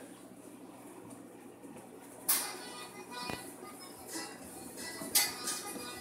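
Faint background music, with two brief rustling scrapes, about two and five seconds in, from hands tossing seasoned asparagus spears in a metal baking pan.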